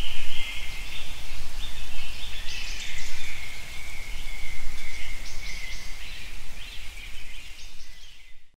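Birds chirping continuously in a dense, high-pitched run, over a low rumble.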